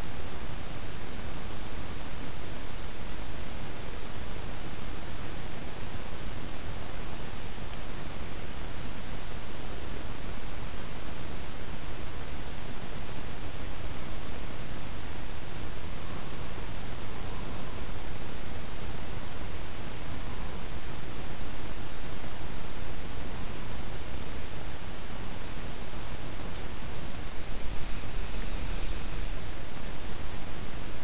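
Steady hiss of an open microphone's noise floor, like static, with a brief low rumble about two seconds before the end.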